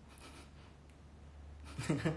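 A soft breath, then a short burst of a person's laughter near the end.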